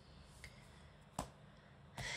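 Near silence, room tone, broken by a single sharp click about a second in.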